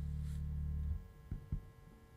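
Electric bass guitar holding a low note that rings on and is damped about a second in, followed by two faint short plucks on the strings.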